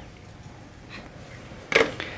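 Mostly quiet room tone in a pause between speech, with one short breathy sound near the end.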